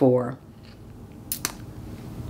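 One spoken word, then a pause broken by two short, quick clicks about one and a half seconds in.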